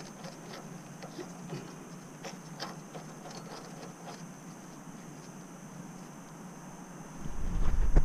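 A few faint, irregular metal clicks and taps of hand-tool work on a boat trailer's axle spindle, over a steady low hum. Near the end, a loud low rumble as the camera is picked up and moved.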